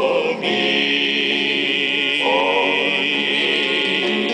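Male gospel quartet singing held close-harmony chords with vibrato, moving to a new chord about two seconds in.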